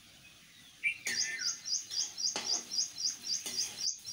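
A small bird chirping in a fast, even series, about five high chirps a second, starting about a second in. Over it come a few light knocks of a spatula against the steel kadai.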